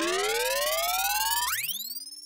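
Synthesized rising pitch sweep with several overtones, used as a transition effect in the track. It climbs steadily for about a second and a half, then a second, faster glide rises, levels off and fades out.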